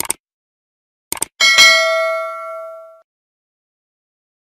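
Subscribe-button animation sound effects: a short mouse click at the start, two quick clicks about a second in, then a notification-bell ding that rings out and fades within about a second and a half.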